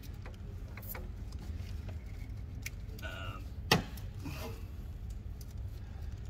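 Hands fitting a turbo heat blanket around a turbocharger in an engine bay: scattered small clicks of parts being handled, with one sharp knock a little past the middle, over a steady low hum.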